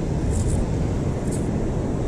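Steady low rumble of wind buffeting the microphone.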